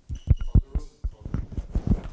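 Handheld microphone being handled: a quick, irregular series of dull thumps and knocks as it is picked up and held to the mouth, with a faint high tone briefly in the first half.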